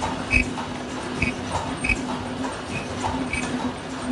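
Automatic face-mask production line running: a steady machine hum with short, high-pitched chirps and low knocks repeating about every two-thirds of a second as the stacking mechanism cycles.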